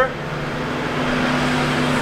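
A motor vehicle running, heard as a steady low mechanical hum over a noisy wash, with a second low tone joining about halfway in.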